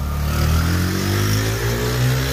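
Motorcycle engine accelerating past at close range, its pitch rising steadily as it pulls away.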